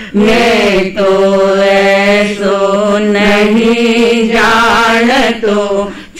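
An elderly woman's voice singing a Jain devotional bhajan solo into a microphone. She holds long drawn-out notes with a slight waver, with short breath breaks between phrases.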